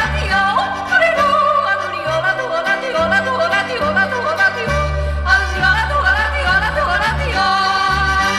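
Alpine yodeling song: a singer yodels in quick leaps between chest voice and falsetto over a bouncy accompaniment with a bass line moving in even steps.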